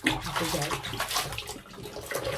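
Bathroom sink tap water running and splashing as a face is rinsed of scrub, coming on suddenly at the start.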